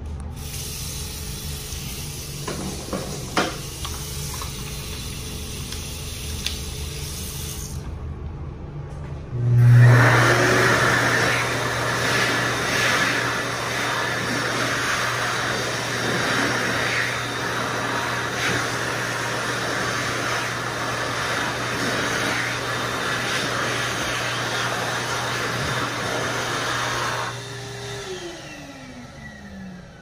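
Water running from a sink faucet for the first several seconds. About ten seconds in, an Excel Dryer Xlerator eco hand dryer with a 1.1 nozzle starts with a rising whine, blows steadily for about seventeen seconds, then spins down with a falling whine near the end.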